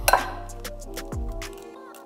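Eggs being cracked against a glass mixing bowl: a few light taps and clinks of shell on glass in the first second or so, over steady background music.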